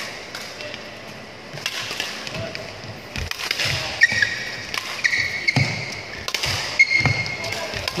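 Badminton rackets striking shuttlecocks in quick succession in a hall, with shoes squeaking briefly on the court mat and dull thuds of landing footsteps.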